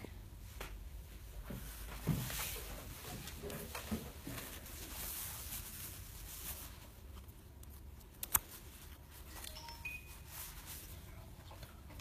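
Faint clicks and rustling of grooming tools trimming a dog's toes, with one sharp snip about eight seconds in.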